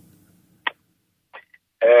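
A short pause on a telephone line in a radio phone-in: a faint hum trails off and one brief click comes about two-thirds of a second in. Near the end a man's drawn-out hesitant "ehh" begins over the phone line.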